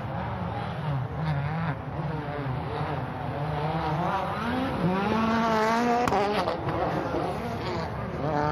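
Turbocharged four-cylinder World Rally Car engine revving hard, the pitch wavering and then climbing for over a second before a sharp crack about six seconds in, after which it drops.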